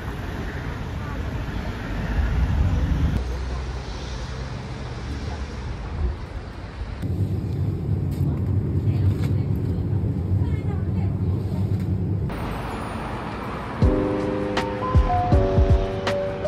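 City ambience from several clips: traffic and street noise, broken by abrupt changes where the shots change, with a steadier low hum in the middle section. Light melodic music comes in about two seconds before the end.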